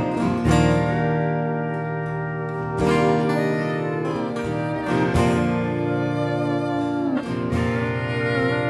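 Acoustic folk band playing an instrumental passage: acoustic guitars strumming chords roughly every two seconds, with a fiddle bowing sustained notes over them.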